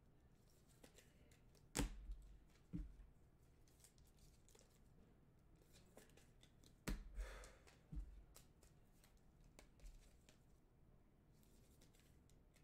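Faint handling of sports-card packs and boxes on a table: a few soft knocks, about four across the stretch, with a brief rustle of paper or wrapper after the third.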